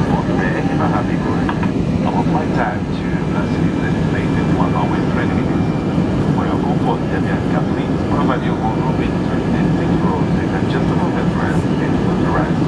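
Steady roar of engine and airflow noise inside a jet airliner's cabin during the climb after takeoff, with passenger voices murmuring faintly in the background.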